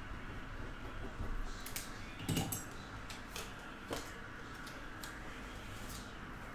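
A few scattered, light keystroke clicks on a computer keyboard over quiet room noise, with one slightly louder soft sound a little past two seconds in.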